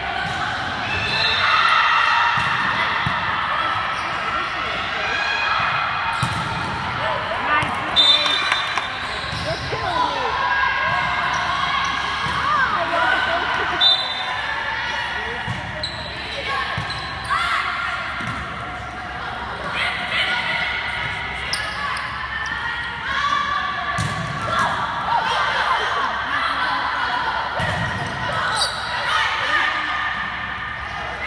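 Echoing gym din of an indoor volleyball match: many overlapping voices of players and spectators calling out, with a few sharp ball hits.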